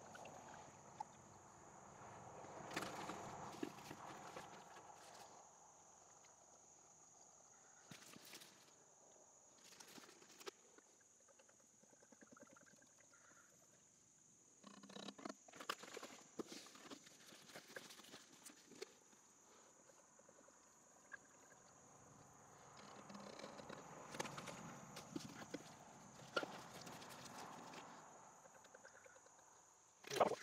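Faint glugging and trickling of motor oil poured from a quart bottle into a funnel at the engine's oil filler, in two stretches, with a few light knocks of the plastic bottle being handled in between.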